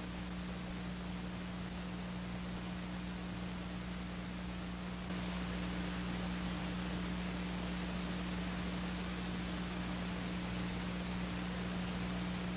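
Steady hiss with a low electrical hum, the background noise of an old 1980s videotape recording; it steps up slightly about five seconds in.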